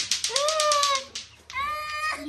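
A young boy crying in long, drawn-out wails that rise and fall in pitch: one lasting nearly a second, then a second one starting near the end.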